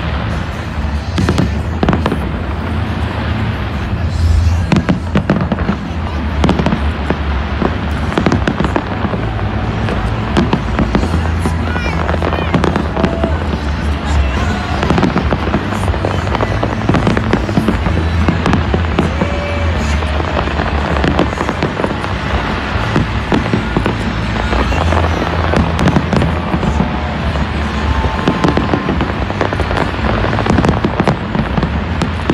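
Large aerial fireworks display: shells bursting in a dense, continuous barrage of bangs and crackling, with no let-up.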